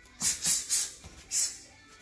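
Someone shadowboxing a jab, jab, cross and side-kick combination: three quick, sharp hissing bursts a quarter-second apart, then a fourth after a short pause for the kick.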